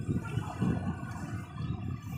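Seaside ambience: a steady low rumble of wind and surf, with small waves washing up on a sandy beach.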